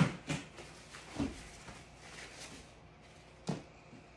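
A few short knocks and clatters of craft supplies being handled on a table, the loudest right at the start, with faint handling noise between.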